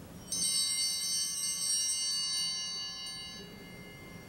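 An altar bell is struck about a third of a second in. Its bright, high ringing fades over about three seconds, marking the priest's communion.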